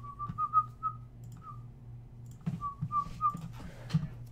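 A person whistling a short run of quick notes, pausing, then whistling a few more, over a steady low electrical hum, with a sharp click near the end.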